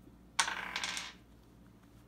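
A short clatter of a small hard plastic toy piece on a wooden tabletop, starting suddenly under half a second in and dying away within about half a second.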